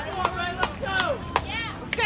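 Voices calling out across an outdoor softball field, with about four sharp short knocks spread through the moment.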